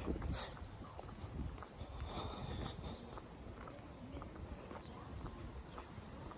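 Outdoor walking sound on a handheld phone: a steady low rumble of wind and handling on the microphone, with faint scattered footstep clicks and a short distant sound about two seconds in.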